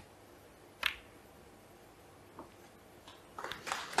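Snooker cue tip striking the cue ball with one sharp click about a second in, then the cue ball meeting a red with a much fainter click a second and a half later. A few faint sounds follow near the end.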